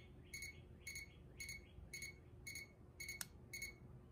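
Ancel PB100 circuit probe's buzzer giving short, faint beeps, about two a second, as the tool runs its self-test. A single light click comes about three seconds in.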